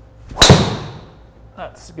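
Golf driver striking a teed ball: one sharp, loud metallic crack with a short ringing tail, a well-struck shot.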